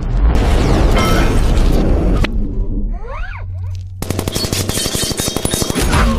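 Film battle sound effects: a loud rumbling crash for the first two seconds, a few short rising whines around the middle, then rapid automatic gunfire over the last two seconds.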